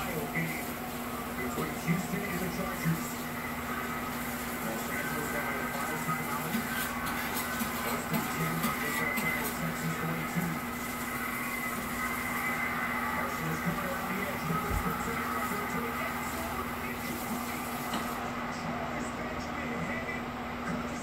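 Muffled speech from a television in the background, over a steady low hum.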